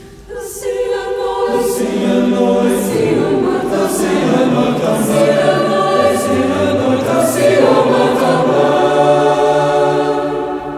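Mixed chamber choir singing a Portuguese text in sustained, many-voiced chords. It swells from quiet to full voice within the first second or two, with hissing 's' consonants recurring about once a second.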